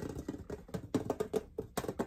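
Fingernails tapping quickly and irregularly on the lid of a gingerbread-man-shaped tin, a rapid run of light clicks.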